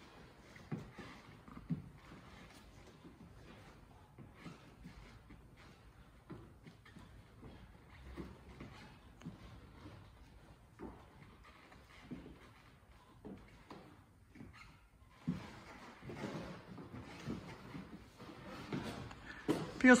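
Quiet, irregular soft thuds and scuffs of trainers on a wooden floor during kneeling lunges and squats, a little busier in the last few seconds.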